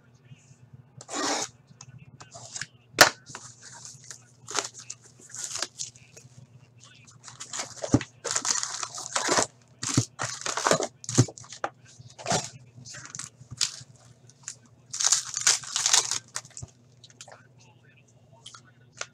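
A sealed cardboard hockey-card hobby box and its foil card pack torn open by hand: a run of short rips, rustles and crinkles, with one sharp click about three seconds in, over a steady low hum.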